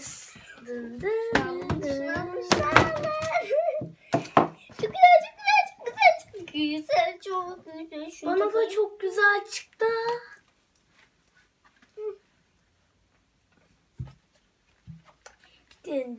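Children's voices and sharp clicks and rustles of caps and tagged sock packs being handled, then several seconds of quiet broken by a few faint knocks.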